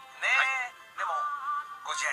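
A short sung phrase: a quick rising-and-falling vocal line, then one long held note. It sounds thin, with no bass, as if played through a small speaker.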